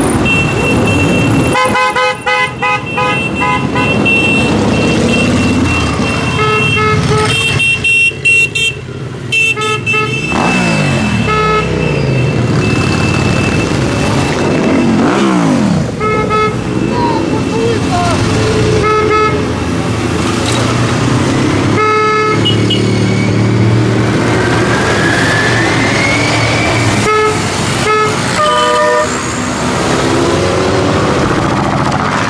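A procession of motorcycles riding past, engines running and revving up and down, with horns tooted repeatedly, sometimes in quick runs of short blasts.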